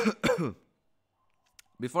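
A man clearing his throat in two quick, rasping pulses lasting about half a second.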